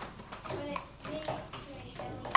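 Faint chatter of young children in a classroom: soft scattered voices in the background.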